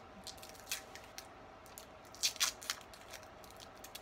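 Sticky tape being picked at and peeled off a small wrapped item by hand: scattered faint crinkles and clicks, a few sharper ones about two and a half seconds in.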